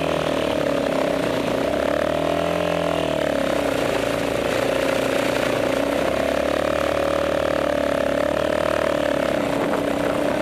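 Yamaha Raptor 350 quad's single-cylinder four-stroke engine running under the rider while riding a muddy trail. The engine note swings briefly about two to three seconds in, then holds fairly steady.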